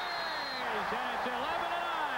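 A man's voice from the television commentary, calling the shot and goal, with a thin steady high tone for about the first half-second.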